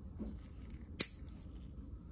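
A single sharp snip of nail nippers cutting through a brittle toenail, about a second in.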